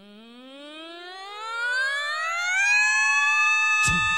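Voices imitating a siren: a wail that slides steadily up in pitch and swells for nearly three seconds, then holds as a steady chord. A single thump near the end.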